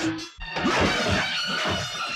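Dramatic film-score music that cuts out briefly about half a second in and gives way to a loud, dense crashing burst.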